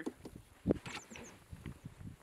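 A dog scrambling up into the plastic cargo bed of a utility vehicle, its feet and body knocking against the bed, with one louder thump about two-thirds of a second in.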